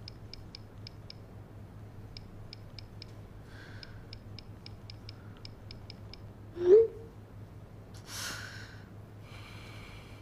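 Smartphone keyboard key clicks in quick runs of taps as a message is typed, then a short, loud sliding blip about seven seconds in, followed by two breathy exhales.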